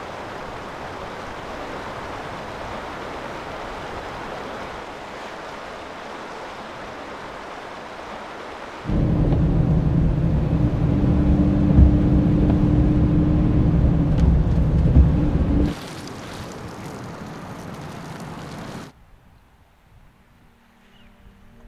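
Steady rain falling on forest foliage. For about seven seconds in the middle, a much louder low rumble with a steady hum covers the rain. The rain alone then returns and cuts off abruptly near the end.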